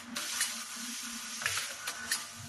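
Drip coffee bag packing machine running: a continuous hiss over a steady low hum, broken by a few short, sharper bursts of hiss and clicks as it cycles.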